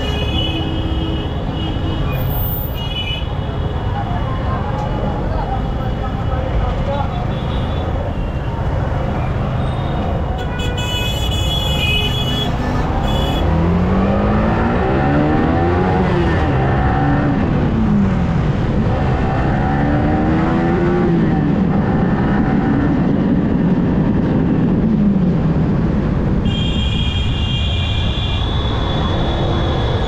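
Yamaha R15M's single-cylinder engine pulling away and revving up through the gears, its pitch climbing and then dropping at each shift, over a steady rumble of wind and traffic. Short high beeping tones come near the start, midway and near the end.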